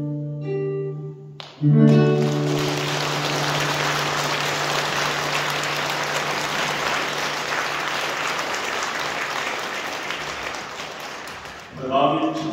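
A live song ends on a held final chord about a second and a half in. Audience applause follows for about ten seconds, easing slightly near the end.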